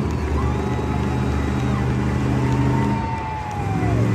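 El Toro Loco monster truck's supercharged V8 engine held at steady high revs as the truck balances in a nose wheelie on its front tyres. The revs dip briefly about three seconds in and rise again near the end.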